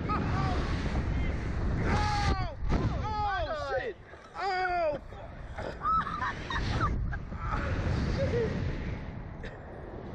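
Wind rushing over and buffeting the ride's onboard microphone as two riders are flung through the air on a SlingShot reverse-bungee catapult ride. Their screams and yells cut in again and again over the wind noise.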